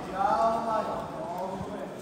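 A person shouting once across a large sports hall, with a steady background murmur of the crowd, and light patter from bare feet moving on the wrestling mat.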